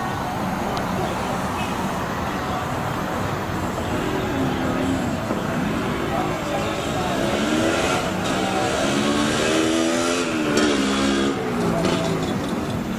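Night street traffic with a motor vehicle engine passing; its pitch rises and falls through the second half.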